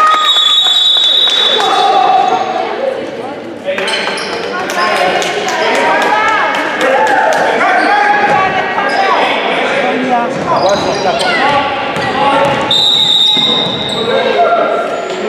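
A basketball being dribbled on a hardwood court, a run of sharp bounces that echo through a large gym, with players and spectators calling out over it.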